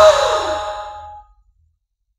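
The last struck note of a campursari band, gamelan and keyboard, ringing out and dying away, with a slowly falling tone. It fades into complete silence a little past halfway through.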